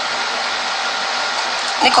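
A steady, even hiss of background noise, like a fan or blower, with no break in it. A voice starts over it near the end.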